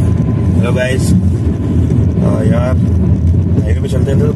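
Steady low road and engine rumble inside a Hyundai i20's cabin while driving, with a man's voice in a few short snatches over it.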